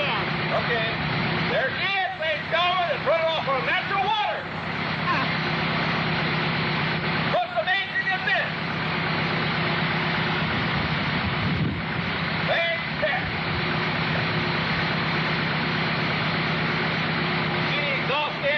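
Dune buggy engine running steadily at idle, a constant hum under a wash of noise, with people's voices talking over it a few times.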